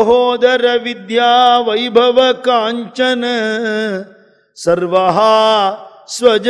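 A man's voice singing a devotional verse solo, holding long notes with ornamented turns in pitch, with a brief pause a little after four seconds in.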